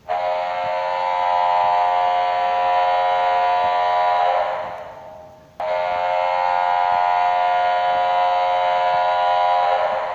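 Anaheim Ducks arena goal horn: two long blasts of a chord of steady tones. The first fades out after about four and a half seconds, and the second starts abruptly about a second later and holds for about four seconds.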